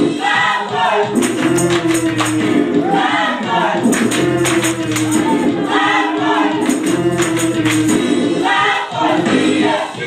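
Gospel vocal group singing live with full choir-style voices over instrumental backing, with a steady percussive beat.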